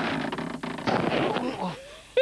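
A fall from stilts: a noisy rush, then about a second in a crash as the puppet and its wooden stilts hit the grassy ground, fading quickly.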